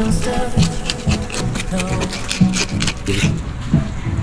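A hand fish scaler scraping the scales off a whole fish on a wooden cutting board in quick repeated strokes, about three or four a second, over background music.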